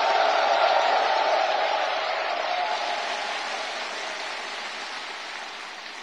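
Audience applauding, loudest at the start and fading slowly.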